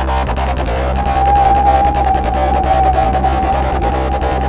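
Goa trance electronic music: a steady bass line under fast ticking hi-hats, with a single held synth lead note coming in about a second in.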